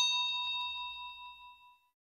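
Notification-bell 'ding' sound effect: one struck ding with several tones ringing together, fading out over nearly two seconds.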